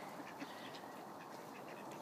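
A flock of mallards feeding on cracked corn, quacking faintly.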